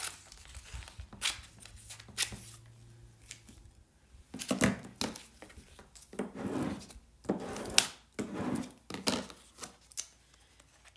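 Transfer tape over cut vinyl being rubbed down with a plastic scraper: a few light clicks, then from about halfway a run of short rustling, scraping strokes and crinkling of the plastic film.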